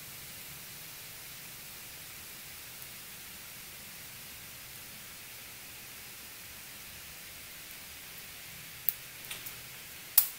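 Faint steady hiss with a low hum underneath, the background of a workshop while the hot-wire foam cutter draws silently through the foam. A single sharp click comes about nine seconds in, followed by a couple of faint ticks.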